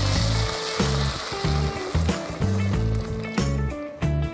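Background music with a repeating bass line. Under it, water poured into a hot pot of butter-sautéed corn sizzles and hisses, fading after about two seconds.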